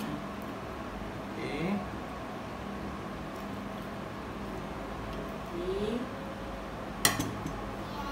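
A spatula clacking and scraping against a plate as a cheese-topped patty is lifted and set onto a bun, with one sharp clack about seven seconds in.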